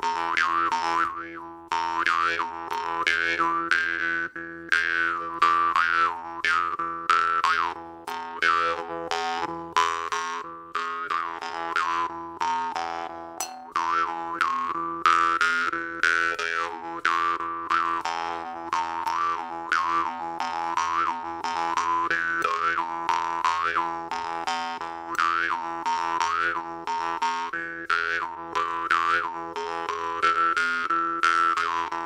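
Jaw harp plucked in a steady slow groove: a constant low drone with a twangy attack on each pluck, about two to three plucks a second, while the mouth shifts the overtones up and down into a wah-like melody.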